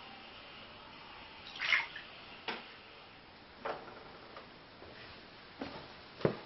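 A few scattered knocks and clicks in a small room, with a louder short rustling burst a little under two seconds in.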